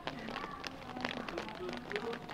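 Faint rustling and light clicks from a hand-held cluster of stink bean pods being shaken to knock ants off, over faint distant voices.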